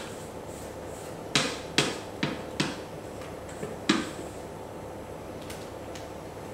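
Spatula knocking against a stainless steel mixing bowl while meringue is scraped out: about five sharp knocks over two and a half seconds, starting about a second in.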